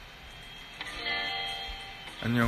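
Music playing, with a set of held notes coming in a little under a second in.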